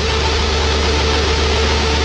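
Loud, heavily distorted electric-guitar music held as a steady, noisy drone.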